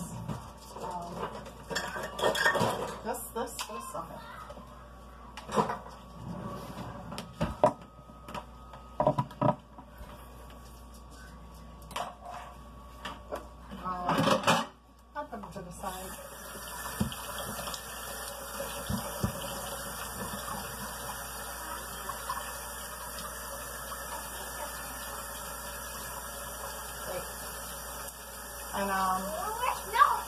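Dishes and utensils clinking and knocking in irregular strokes for about the first fifteen seconds, then a steady rushing noise that sets in suddenly and holds for the rest.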